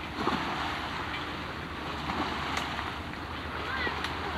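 Choppy water washing against a rocky shore, with wind buffeting the camcorder microphone.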